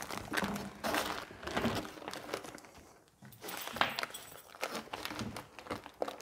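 Cloth leaf-collection bag of a Stihl SH 86C rustling and crinkling as it is worked over the vacuum's plastic outlet tube, with a few small knocks. The handling noise comes in short spells, with a brief quiet pause about halfway through.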